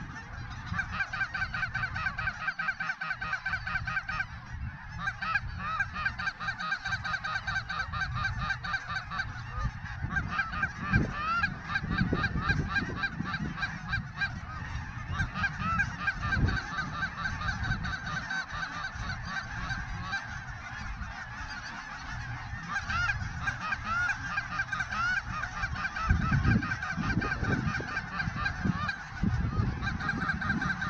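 A large flock of geese honking overhead, many calls overlapping in a dense, unbroken chorus, with wind rumbling on the microphone.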